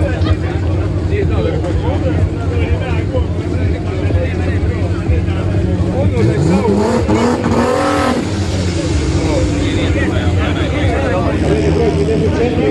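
A car engine rises in pitch from about six seconds in, holds briefly, then falls away, over a steady low engine hum. Voices and chatter continue throughout.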